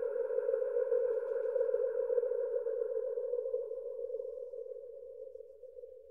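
A steady synthesized electronic drone: one held tone with a few fainter overtones, slowly fading away and dying out at the very end.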